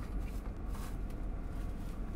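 A steady low rumble inside a car cabin, with light rustling and a few faint clicks from handling.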